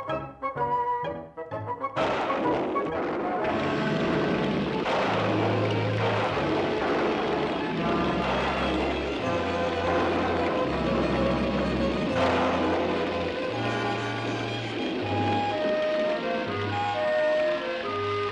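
Cartoon orchestral score: light staccato notes at first, then about two seconds in a heavy rain downpour sound effect starts suddenly and continues under low, brooding music with a melody on top.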